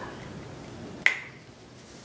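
A single sharp metallic click about a second in, with a short ringing tail, as metal bicycle parts are handled.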